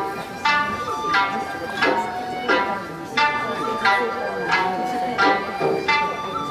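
Ryukyuan classical dance music: a sanshin plucked at a slow, even pulse of about one note every 0.7 seconds, with a voice singing long held notes over it.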